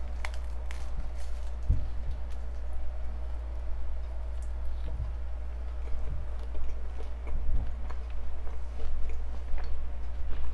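A person bites into a piece of avocado and arugula toast and chews it, heard close on a lapel microphone. Small crunches from the toasted bread come at irregular moments, the sharpest near the start and about two seconds in, over a steady low hum.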